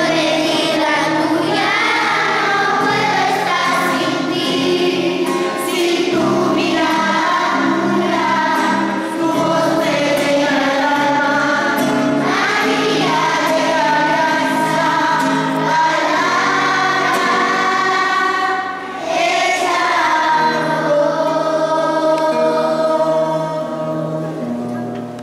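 Many children's voices singing a hymn together, led by a woman singing with an acoustic guitar, in short phrases with brief breaths between them.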